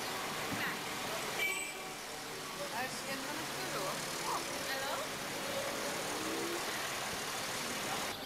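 Street sound: traffic running and indistinct voices, with the background changing abruptly about a second and a half in.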